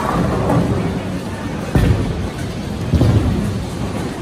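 Bowling alley din: balls rolling down the wooden lanes with a low rumble and pins clattering, with two louder crashes, one just before two seconds in and one about three seconds in.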